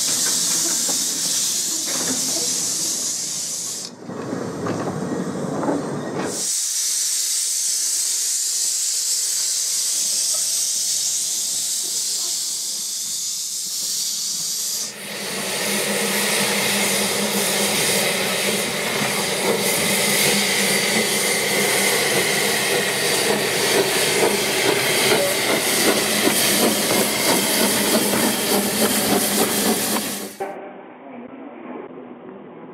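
A small narrow-gauge steam locomotive hisses loudly as it vents steam while pulling out of a tunnel, with a short break in the hiss about four seconds in. About fifteen seconds in the sound changes to a steady hiss with a low hum, from narrow-gauge steam locomotives standing with a train at a station.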